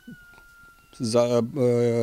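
A man's voice making a drawn-out, steady-pitched hesitation sound: one held vowel starting about a second in and running on into speech. Before it comes a faint steady high tone.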